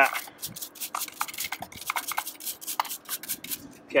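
A brush scrubbing a bicycle cassette wet with degreaser: a run of short, irregular scratchy strokes.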